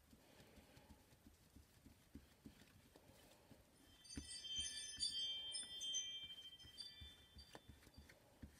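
A chime of several high ringing tones that sets in suddenly about halfway through and fades away over about three seconds.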